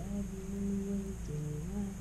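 A woman singing a slow Swahili praise song unaccompanied. She holds one long steady note for over a second, then moves to a lower note near the end.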